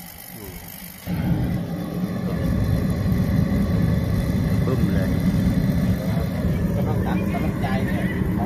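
Used Japanese kerosene forced-air heater, a 110 V blower with a kerosene burner, lighting by spark ignition about a second in. The sound jumps suddenly from a quieter hum to a loud, steady low rumble of burner flame and blower, which keeps going as the heater runs.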